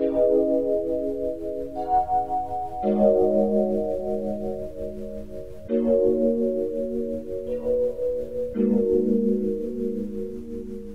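A sampled kalimba note played back through a software sampler as a chord melody. The four chords change about every three seconds, and the notes pulse rapidly from an LFO setting. A low background noise in the sample gives it a lo-fi sound.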